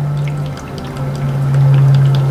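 Small jet of pure hydrogen burning at a brass nozzle on a magnesium and hydrochloric acid gas generator: a steady low hum with a faint fizz, louder in the second second.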